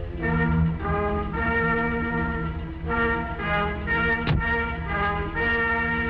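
Dramatic orchestral background music, with brass holding sustained chords that change every second or so. About four seconds in, a car door shuts with a single thump.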